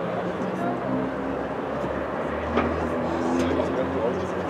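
Many overlapping voices of players and spectators calling and shouting across a soccer field, with a low, steady engine drone rising in from about a second in.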